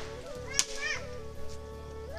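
A single sharp crack about half a second in, typical of a coconut being smashed open on stone, with steady music playing underneath.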